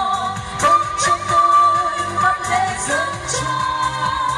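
A Vietnamese revolutionary song sung live into microphones over amplified backing music with a steady beat, the voice holding long notes with vibrato.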